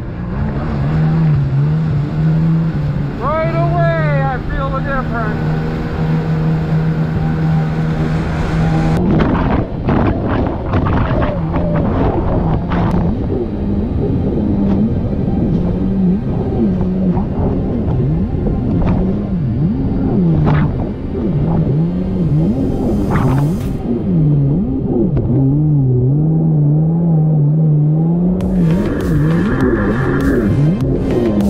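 Kawasaki 750 SXi Pro stand-up jet ski's two-stroke twin engine, fitted with a new 13/18 impeller. It runs steadily at first, then from about nine seconds in its revs rise and fall again and again as the ski rides fast over choppy water, with splashing spray.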